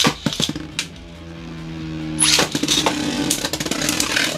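Beyblade Burst spinning tops launched into a plastic stadium about two seconds in, with a sharp rip of the launcher, then spinning and clashing in a dense rattle of hits against each other and the stadium.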